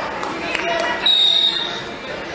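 A referee's whistle blown once, a single steady high tone starting about a second in and lasting under a second, over hall chatter.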